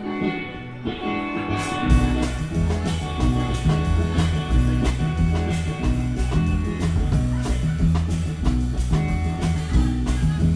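A live band playing an instrumental passage: an electric guitar alone at first, then drum kit and bass come in about a second and a half in with a steady, upbeat rhythm.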